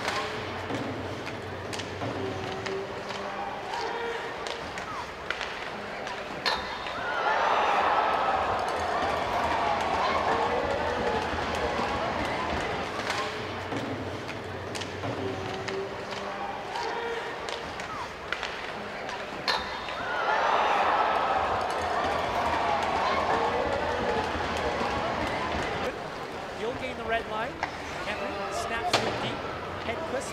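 Hockey rink sound of a goal: a sharp crack of the puck off the post, then a crowd cheering for about five seconds. The same crack-and-cheer sequence comes again about thirteen seconds later.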